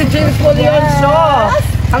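People talking over the steady held tone of toy party horns (torotot) being blown.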